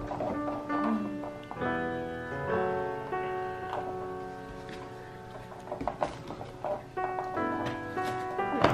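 Instrumental background music of held, piano-like chords changing every second or so, with a few light taps in the second half.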